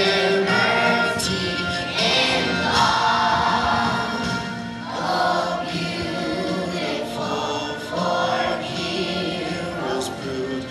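Children's choir singing a song together in sustained phrases, a new phrase starting about every three seconds.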